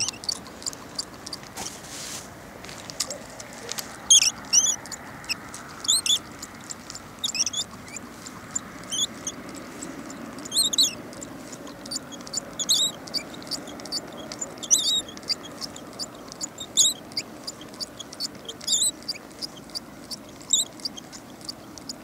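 Birds singing at dusk: short, high, chirping phrases repeated about every two seconds over a steady low background rush.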